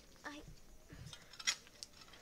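A woman's short exclamation "ai", then faint scuffs and two sharp clicks, the louder about one and a half seconds in.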